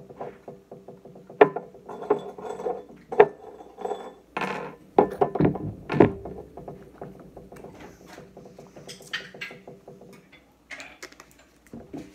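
A woman's loud bursts of laughter and sounds of disgust after a sip of sour lemon juice. Under them runs a fast, steady rattling buzz that fades out near the end.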